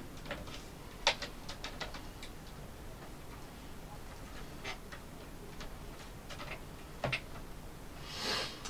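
Scattered light clicks and taps of plastic laptop parts being handled and fitted: a ThinkPad X230's display housing and bezel pressed against the base. A sharper click comes about a second in, with a few softer ones after and another near the end.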